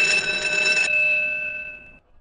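A bell at the greyhound track rattles loudly for about a second, stops abruptly, and then rings out and fades. It signals that the race is about to start.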